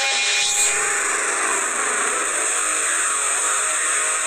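A video's channel intro soundtrack: a loud, steady rushing hiss with faint music underneath.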